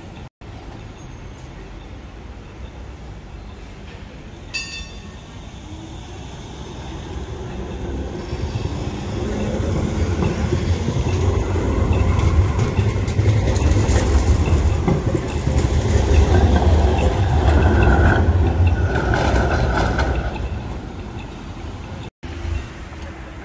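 A Siemens Combino tram passing close by on street track: its running rumble builds from about six seconds in, is loudest through the middle, and fades near the end. Brief high squeal-like tones from the wheels on the rails come just before it fades.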